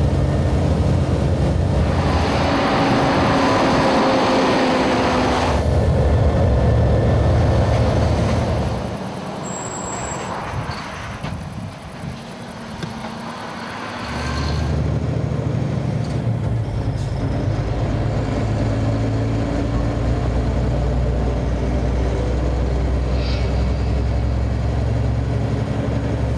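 Scania truck's diesel engine and road noise, a steady low rumble that changes abruptly several times, with a falling whine early on and a quieter stretch near the middle.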